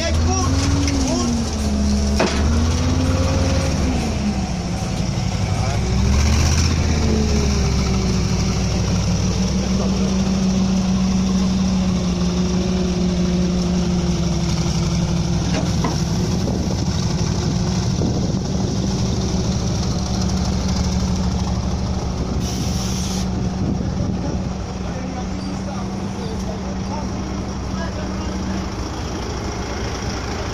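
A BRDM-2 armoured car's V8 petrol engine revs up and down for the first several seconds as the vehicle climbs the ramp onto a car-transporter trailer. It then runs at a steady pitch, which stops a little before the end.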